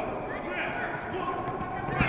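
Judoka grappling on tatami mats, their feet and bodies thudding on the mats, with a louder thud near the end as one is taken down to the mat.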